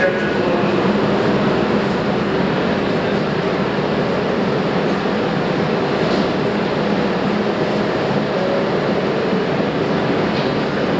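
Stationary R32 subway train at the platform with its doors open, its onboard equipment giving a steady hum with a couple of held tones under a wash of station noise.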